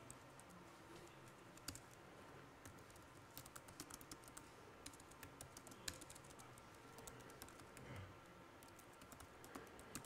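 Faint typing on a MacBook laptop keyboard: a quick run of soft key clicks a few seconds in, with a few scattered taps around it.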